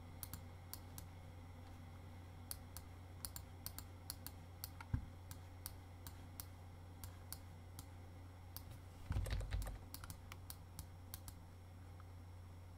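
Faint, irregular clicking of computer input at a desk, several light clicks a second, over a low steady hum. A soft low rustle comes about nine seconds in.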